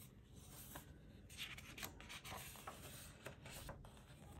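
Faint paper rustling and light taps as a page of a paperback picture book is handled and turned.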